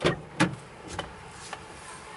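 Car driver's door being unlatched and opened from outside, with a sharp click at the start and a louder knock about half a second later, followed by a few lighter knocks as someone climbs into the seat.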